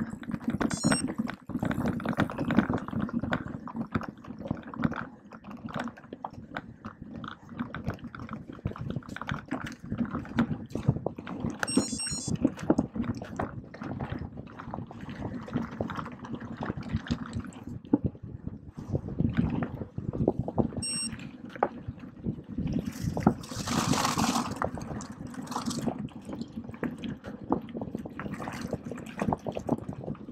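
Mountain bike ridden fast over a rough forest trail and then a gravel road, heard from a camera mounted on the bike: a continuous dense rattle and crunch of the tyres and frame over stones. About three-quarters of the way through, a louder hissing rush rises and fades.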